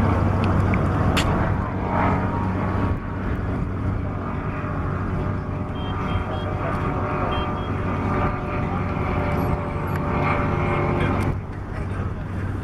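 Pipistrel Virus light aircraft's piston engine and propeller droning overhead during a display flight. The drone is loudest in the first couple of seconds and drops off suddenly near the end.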